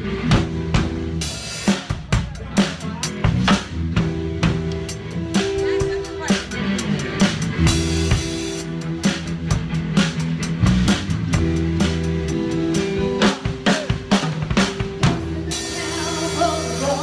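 Acoustic drum kit played in a busy groove of snare, bass drum and tom strikes along with a backing track of held bass notes. A cymbal wash swells near the end.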